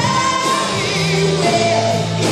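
A female vocalist singing live into a microphone, holding a note with vibrato about halfway through, backed by a band with a string orchestra.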